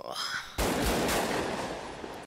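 Automatic rifle fire from a film's street shootout soundtrack: rapid shots run together into a continuous rattle starting about half a second in.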